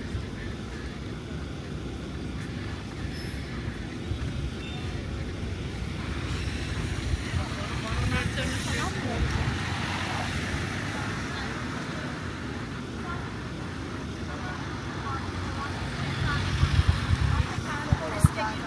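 City street traffic: cars passing close by at an intersection, their engine and tyre noise swelling around ten seconds in and louder again near the end, over a steady traffic rumble.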